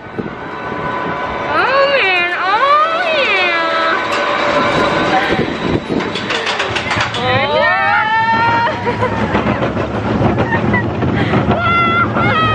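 Junior roller coaster car running along its track with a steady rush and rattle. High rising and falling wordless cries from riders come about two seconds in and again around seven to eight seconds.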